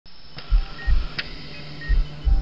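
Sparse, dark intro music: pairs of deep low thumps in a heartbeat rhythm, repeating about every second and a half, with a few faint short high tones.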